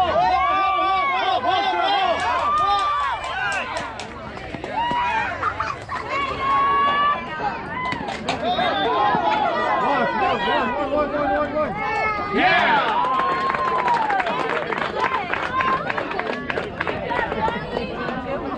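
Many young players' voices calling out and chattering at once across a ball field, overlapping shouts with no single clear words.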